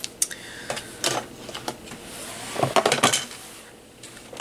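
Cotton fabric with a pinned zipper being handled and moved across a cutting mat: rustling with scattered light clicks and taps, a small cluster of louder clicks about three seconds in.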